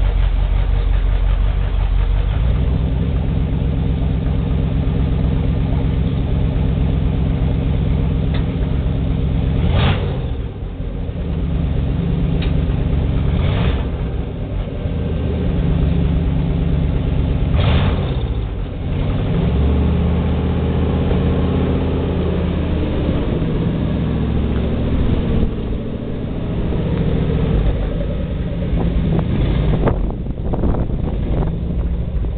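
Chevrolet 366 big-block V8 of an M5A1 Stuart light tank, fitted in place of the stock twin Cadillac engines, running loud and hot-rod-like. It is revved several times, the pitch climbing and then falling back, around ten and eighteen seconds in.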